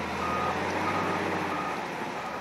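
Wheel loader's reversing alarm beeping, three high beeps about two thirds of a second apart, over its diesel engine running; the beeps fade near the end.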